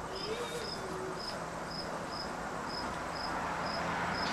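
A cricket chirping steadily: short, high chirps about two a second, over a steady outdoor hiss. A faint, brief voice rises and falls once in the first second.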